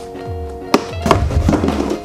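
Background music with a steady beat, over cardboard packaging being handled as a parts box is opened: two sharp taps in the middle.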